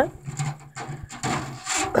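Dry fronds and bedding in a lizard enclosure rustling and scraping as a hand reaches in among them, with irregular rubbing and handling noise.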